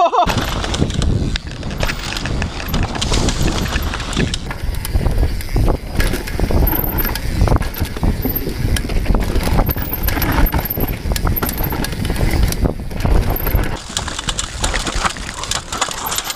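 Mountain bike ridden fast down a rough dirt and rock trail, heard from a camera on the rider: a continuous rush of tyre and wind noise with frequent knocks and rattles from the bike over bumps and roots.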